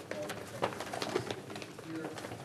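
Indistinct speech in a room, with no clear words.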